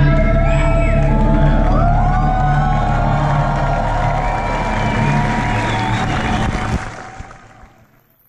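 Live rock band holding a sustained closing chord over a cheering, whooping crowd. The bass cuts off about seven seconds in and the whole sound dies away.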